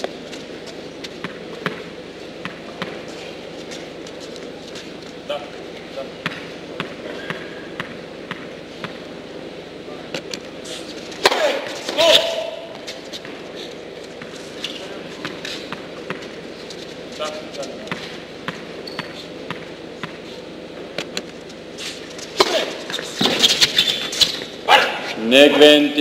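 Tennis ball bouncing and being struck on an indoor hard court: a scattering of sharp ticks over a steady hall hum, with brief voices about halfway and a busier run of hits and voices near the end.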